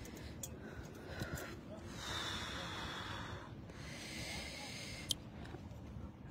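Faint outdoor background hiss, with a person's breath close to the microphone about two seconds in, lasting a second and a half, and a single sharp click near the end.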